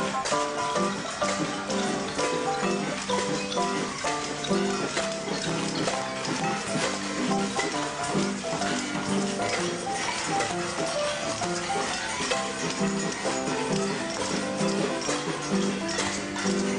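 A small live band playing a tune: a washboard scraped and tapped in a steady rhythm under held melody notes.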